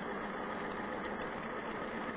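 Benchtop electric drive motor and transmission unit of a prototype lunar-rover drive, running steadily under joystick control with an even mechanical noise.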